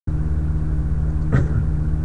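A steady low hum made of several even low tones, with a short vocal sound from the man about two-thirds of the way through.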